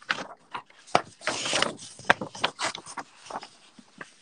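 A sheet of grid paper being handled and slid across a desk: a rustling rub a little over a second in, among several small clicks and knocks.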